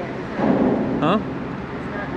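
Wind rumbling on the microphone over open water, swelling louder for about half a second near the middle, with a man's short spoken "huh?".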